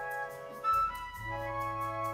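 Jazz big band playing a slow ballad: held chords from a flute section over a steady bass note. The chord changes about a second in, with a brief louder swell, then settles on a new held chord.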